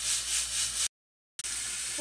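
Hiss from a large aluminium pot heating on the stove, broken by a half-second gap of dead silence about a second in. After the gap the hiss is steadier and a little quieter, with oil now lying in the hot pot.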